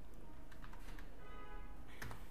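Computer keyboard keys tapped a handful of times, typing a short web address, over a steady low background hum. A faint held tone sounds briefly in the second half.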